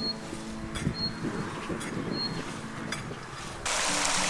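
A long-handled hand hoe scraping and knocking into dry soil a few times as earth is pulled up around the base of potato plants (hilling). Near the end the sound switches suddenly to the steady rush of irrigation water pouring from a hose into a furrow.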